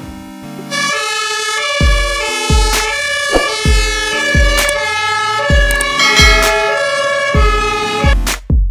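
A fire engine's siren sounding from an aerial ladder truck, mixed with background music that has a steady drum beat.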